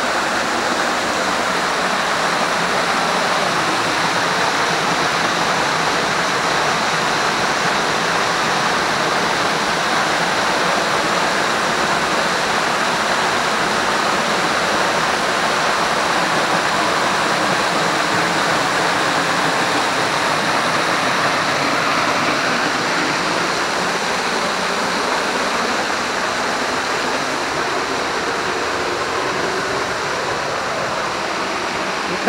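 A waterfall pouring as a thin curtain into its pool, heard up close from behind the falling water: a loud, steady rushing that eases slightly near the end.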